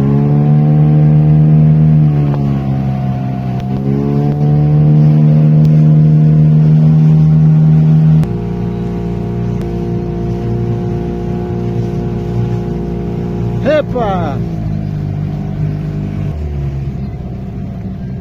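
Small river boat's motor running steadily, its pitch dipping briefly about two seconds in and then recovering. About eight seconds in the sound cuts abruptly to a quieter, steady engine hum.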